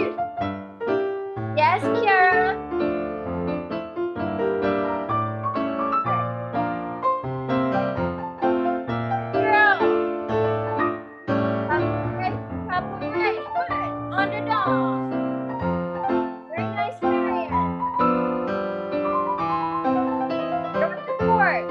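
Live solo piano playing ballet-class accompaniment for a pirouette exercise, in the lilting 'one and a two' count that was set for it. A voice is heard over the piano a few times.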